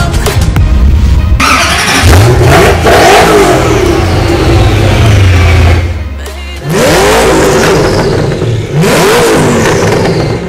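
Supercar engine at high revs, its pitch sweeping upward again and again under hard acceleration. It dips briefly about six seconds in, then comes two more sharp rising revs.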